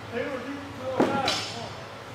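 A man's voice, low and indistinct, with one short sharp knock about a second in.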